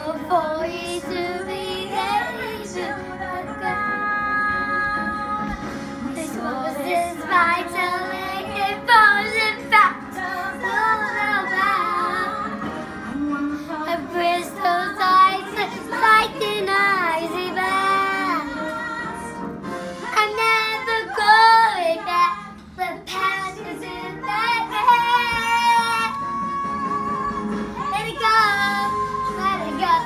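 A young girl singing, her voice sliding between notes, with a brief pause about two-thirds of the way through.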